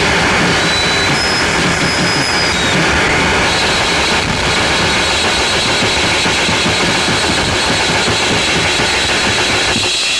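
Japanese harsh noise music: a loud, unbroken wall of dense static-like noise, with thin high whistling tones over it.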